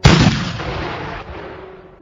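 A single cannon shot: one sudden loud blast that rumbles and dies away over about two seconds.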